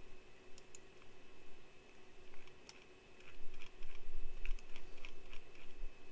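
Computer keyboard typing: irregular runs of key clicks that start about half a second in and are busiest through the middle, over a steady hum.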